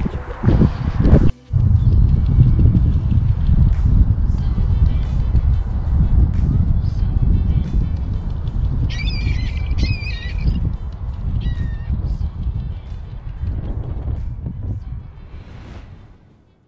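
Waterfowl on the lake calling a few times about nine to eleven seconds in, over a loud low rumble that fades out near the end.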